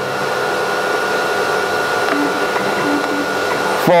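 CNC router's electric spindle cutting a board under its airtight dust hood, with the dust extraction drawing air through the hood: a steady whining hum over a rush of air.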